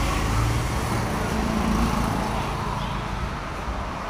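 Motor vehicle engine and road traffic noise, a steady low rumble that eases slightly toward the end.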